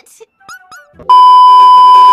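A loud, steady, high beep tone, the test tone played with television colour bars, starts suddenly about halfway in and holds at one pitch. A few brief faint sounds come just before it.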